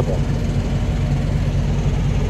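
Steady low drone of idling diesel engines from parked trucks.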